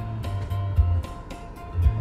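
Music with a steady bass beat playing through a car's cassette stereo speakers, streamed from a phone over a Bluetooth cassette adapter.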